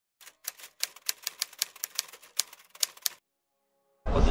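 Typewriter sound effect: about fifteen sharp, irregularly spaced clacks over three seconds, then stopping, with a faint lingering tone after the last one.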